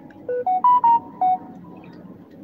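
Short electronic beeping jingle of about six clear notes. The notes step up in pitch and then back down over about a second and a half, the last one fainter, like a phone notification or ringtone.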